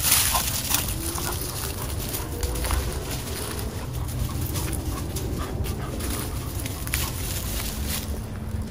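A French bulldog rooting through dry leaves and ivy, the leaves crackling and rustling in many small bursts, with the dog's breathing and a couple of faint short whines early on.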